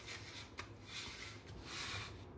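Faint rubbing and rustling of cardstock as a small stamp is pressed onto a paper box and the paper is shifted, with soft swells of noise and no sharp knocks, over a low steady hum.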